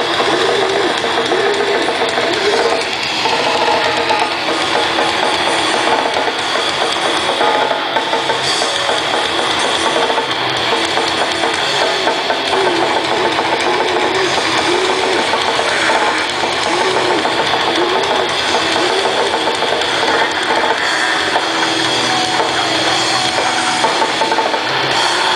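Grindcore band playing live: heavily distorted guitars and bass over drums, loud and continuous without a break.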